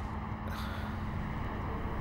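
Steady low outdoor background hum with a faint constant tone, no distinct events.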